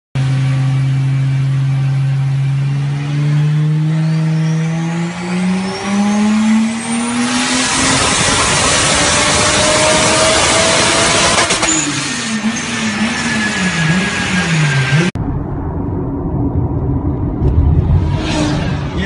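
Ferrari engine in a Nissan pickup on a chassis dynamometer, pulling at full throttle: its note climbs steadily in pitch to a loud peak, then the revs fall and waver up and down as the throttle comes off. About fifteen seconds in, the sound cuts abruptly to a quieter recording of a car out on the road.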